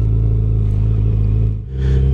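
2018 Yamaha FJR1300's inline-four engine running steadily while riding. About one and a half seconds in, the sound dips briefly and comes back at a different steady engine note.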